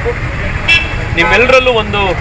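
A man's voice speaking in short phrases over a steady low rumble.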